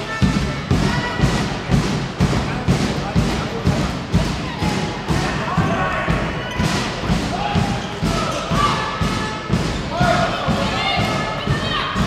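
A handball bouncing and thudding repeatedly on a sports hall floor, a quick run of sharp thuds several times a second. Voices call out over it near the end.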